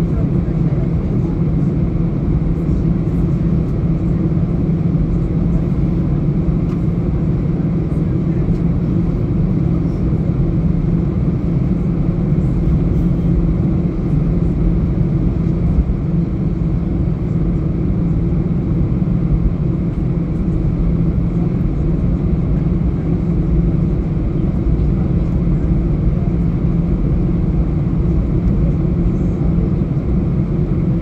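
Airliner cabin noise while taxiing: the Airbus A320-232's IAE V2500 turbofans running at taxi power, heard through the fuselage as a steady low drone.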